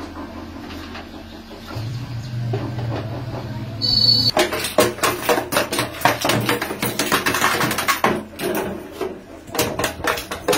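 Small hammer tapping quickly and lightly on the thin wooden top of a guitar body held in a clamped mould, in dense runs of sharp taps that start about four seconds in, pause briefly and resume near the end. A low hum and a brief high squeak come just before the tapping begins.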